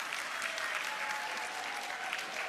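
Audience applauding, a steady patter of many hands clapping.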